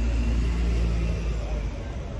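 Low, steady rumble of a motor vehicle on the street, fading about a second and a half in.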